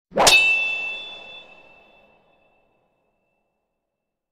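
A single metallic clang with a bright ringing tone that fades out over about two seconds: an intro logo sound effect.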